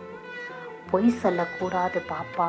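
A high voice singing over steady instrumental accompaniment. The accompaniment holds alone for about a second, then the voice comes in with wavering, sustained notes.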